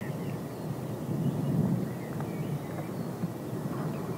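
Outdoor ambience on an open golf course: a steady low rumble with no distinct events.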